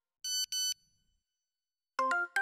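Two short, identical high electronic beeps in quick succession, a phone notification sound effect.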